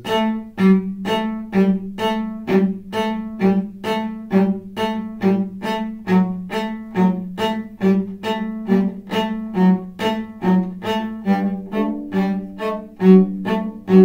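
Solo cello played with the bow: a steady run of short, evenly spaced notes, about two or three a second, mostly on one low pitch. Higher notes join in over the last few seconds.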